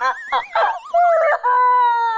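A woman's exaggerated wailing cry, a drawn-out 'à' that wavers up and down in pitch and then settles into a long held note near the end.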